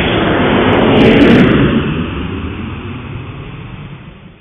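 Jet airliner fly-by sound effect: a rushing jet roar that swells to its loudest about a second in, then fades away.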